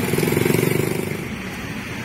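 Road traffic: the engine of a vehicle passing close by, a steady pulsing drone that fades away over the last second.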